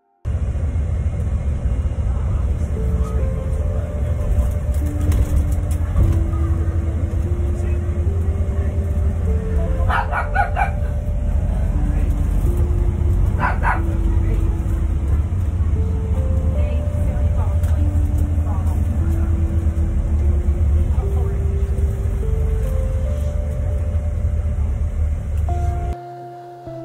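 Inside a moving bus: a loud, steady low engine and road rumble. Background music of slow held notes stepping up and down plays over it, and two short higher sounds come about ten and thirteen seconds in.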